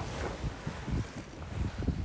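Wind buffeting a handheld camera's microphone on the deck of a sailing yacht, an uneven gusty rumble.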